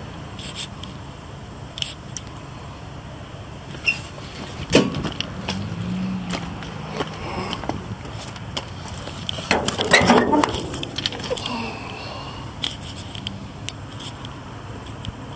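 Airman PDS90S portable diesel air compressor running steadily at idle, a low even hum. Scattered knocks and rustles sound close by, loudest about ten seconds in.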